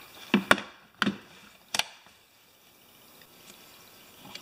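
Four sharp clicks and knocks in the first two seconds, then quiet: a screwdriver and a plastic multimeter case being handled and set down on a workbench just after the meter's back is screwed shut.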